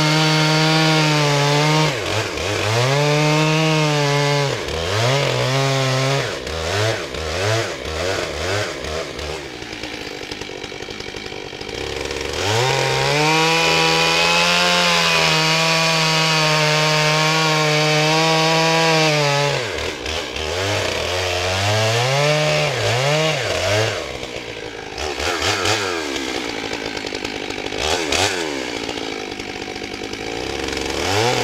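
Stihl MS661 91 cc two-stroke chainsaw bucking Douglas fir logs, its engine climbing and falling in short cuts, with one long steady cut of about seven seconds in the middle, and dropping back between cuts. It runs on a chain worn almost to its end, held below full throttle.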